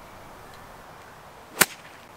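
A pitching wedge striking a golf ball off the turf: one sharp click of the iron's face meeting the ball, about one and a half seconds in.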